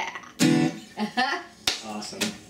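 Acoustic guitar struck with one loud closing strum, followed by short bursts of laughter and one sharp snap near the end.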